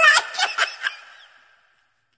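A person's high-pitched snickering laugh, tailing off about a second and a half in.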